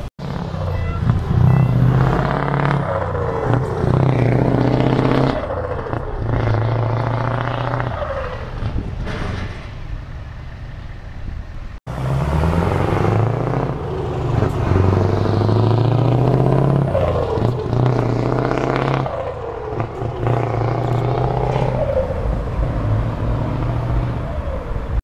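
Heavy diesel lorries driving past one after another, their engines pulling up through the gears in repeated rising runs with drops between shifts. The sound breaks off abruptly about twelve seconds in and picks up again with more lorries passing.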